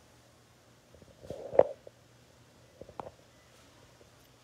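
Handling noise of hair-cutting tools: a cluster of soft knocks and clicks about a second in, the loudest near the middle of it, then a shorter cluster about three seconds in.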